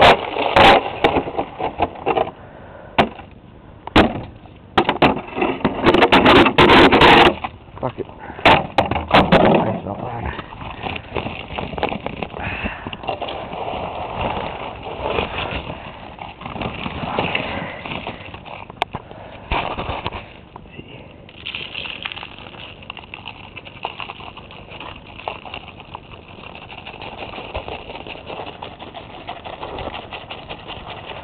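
A broom scraping and knocking on ice over a concrete walk, loud and uneven for about the first ten seconds. After that come quieter rustling and small scattering sounds as ice melt is scooped from a bag with a cup and spread.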